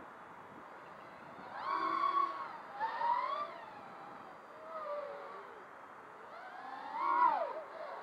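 Eachine Wizard X220 quadcopter's four brushless motors whining in the air, in four surges whose pitch rises and falls as the throttle is punched and eased during aggressive flying.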